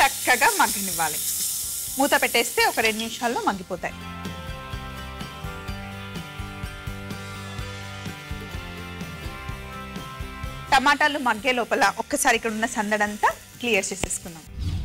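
Amaranth leaves and chopped tomatoes sizzling as they fry in a stainless steel pan, the sizzle dying away over the first few seconds while a woman talks. Then background music with long held notes, and the woman talking again near the end.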